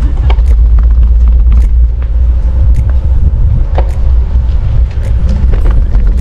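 Wind buffeting the microphone of a camera riding on a moving bicycle, a loud steady low rumble, with scattered light clicks and rattles from the bike over the path.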